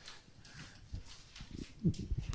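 A quiet room pause with a few faint, dull knocks of handheld-microphone handling noise, around one second in and again near the end.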